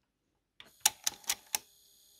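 Cassette deck transport engaging playback: about five sharp mechanical clicks over a second, starting about half a second in, over a faint steady motor hum. The take-up reel drive gets stuck at once on a soft plastic gear with missing teeth.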